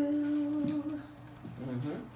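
A person humming a steady held note, which stops under a second in, followed by a brief hummed sound near the end.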